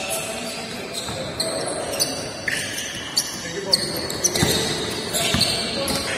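Basketballs bouncing on a hardwood court in a large gym hall, with short high-pitched sneaker squeaks and players' voices. The hits come about every half second, with two heavier thuds near the end.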